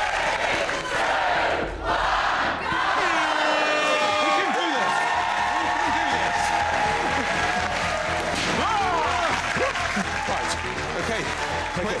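Studio audience clapping and cheering with shouted voices, and music with a steady beat coming in about five seconds in.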